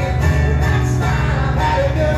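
Acoustic guitar strummed steadily through a PA in a live solo performance, with a man singing over it.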